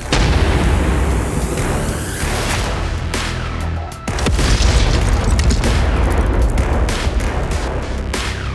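Heavy booms of 120 mm mortar fire, one right at the start and another about four seconds in, each trailing off in a long low rumble, with background music underneath.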